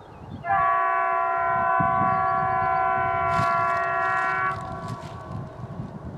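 M62BF diesel locomotive's horn sounding one long, steady blast of several tones at once. It starts about half a second in and stops sharply after about four seconds, with a lower note fading out just after.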